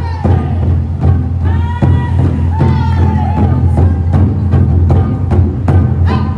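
A taiko drumming ensemble playing barrel drums: a run of hard stick strikes over a deep, booming drum resonance. A higher held, wavering note sounds over the drumming in the middle.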